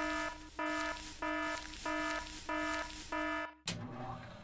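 Electronic alarm beeping: six short, even beeps, about one and a half a second, stopping with a sharp click near the end.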